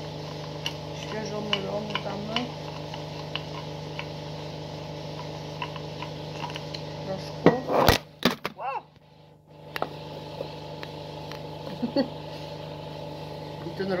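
Wooden pepper mill being twisted, peppercorns cracking in scattered small clicks over a steady background hum. About eight seconds in come loud handling knocks and rubbing, then the sound drops out almost completely for about a second.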